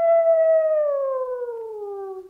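A man's long wolf-like howl, held steady and then sliding slowly down in pitch and fading in the second half.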